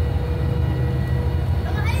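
Twin Yuchai marine diesel engines, 540 hp each, running steadily with the boat under way: a deep, even drone. A voice starts near the end.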